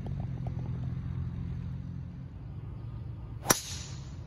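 A golf club striking a ball once, a single sharp crack about three and a half seconds in. Before it, a low rumble fades away over the first couple of seconds.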